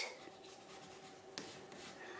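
Faint rubbing of a crayon on paper as colour is laid down, with one light click about one and a half seconds in.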